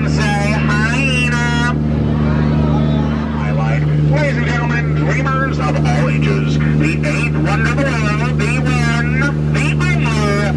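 Tour boat's motor running with a steady low hum, with voices talking over it throughout.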